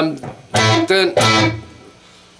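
Electric guitar strummed, three chords struck in quick succession about half a second in, ringing and then fading away near the end.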